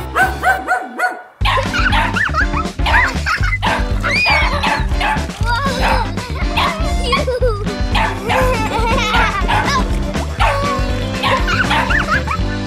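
Upbeat background music with a steady beat, and a puppy barking and yipping over it. A short run of repeated notes opens it, and the full beat comes in about a second and a half in.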